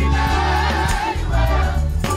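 A small group of women singing gospel together, holding a long note that wavers in pitch, over band accompaniment with a heavy bass.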